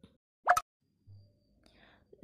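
A single brief pop sound effect with a quick upward sweep in pitch, about half a second in, followed by a faint low hum.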